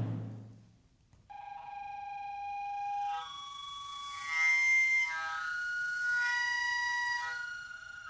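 A recorder fitted with a looped plastic tube plays several held, overlapping tones that step to new pitches every second or so, starting about a second in. Before that, the low ringing tail of a thump fades out.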